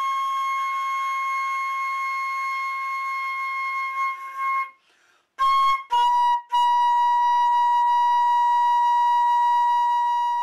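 Solo concert flute holding a long high note, then a brief break about five seconds in. Two short notes follow, then a long final note held a little lower in pitch.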